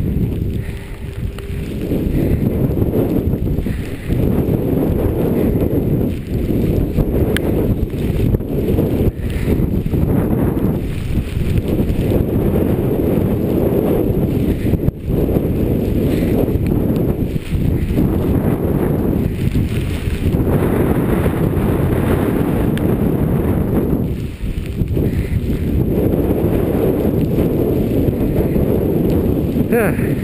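Wind buffeting the microphone of a skier's camera during a fast downhill run in a snowstorm: a loud, unsteady, deep rumble with a few brief lulls.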